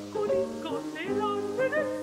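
Mezzo-soprano singing a Creole folksong with piano accompaniment: short, quick vocal phrases with slides between notes over held piano chords.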